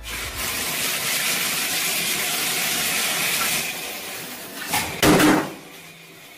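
Water rushing in a bathtub: a loud, steady hiss for about three and a half seconds that then fades, followed by a short loud burst of noise about five seconds in.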